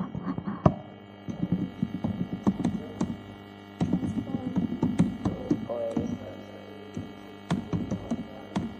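Scattered laptop keyboard keystrokes as a command is typed, short irregular clicks over a steady electrical hum.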